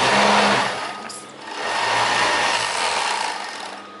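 Overlock (serger) machine running, stitching elastic onto a trouser waistband. It runs in two spells, briefly easing off a little over a second in, then running again and fading toward the end.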